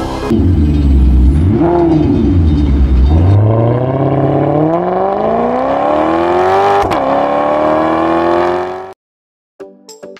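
A car engine revving, then accelerating hard with its pitch climbing. The pitch drops at a gear change about 7 seconds in, climbs again, and the sound cuts off suddenly about two seconds later.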